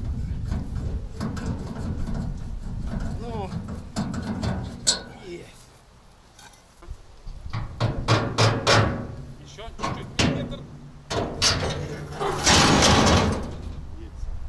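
Irregular metal knocks and bangs as men work at the steel side of a truck bed loaded with a crawler tractor, with a cluster of strikes in the middle and a louder harsh clatter near the end; indistinct voices in between.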